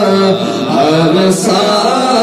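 A man singing a naat (Urdu devotional poem) without instruments, drawing out a long, wavering melodic line.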